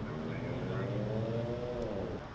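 A vehicle engine running over a steady low hum, its pitch rising slowly for over a second, then falling away as the sound fades near the end.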